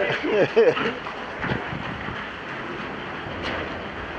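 A short laugh in the first second, then a steady, even rushing noise.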